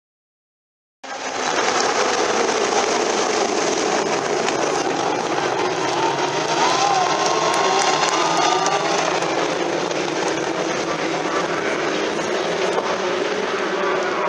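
A field of Indy Lights open-wheel race cars at full throttle past the infield at the race start: a loud, dense, continuous engine noise that begins about a second in, with single engine notes rising and falling as cars pass about halfway through.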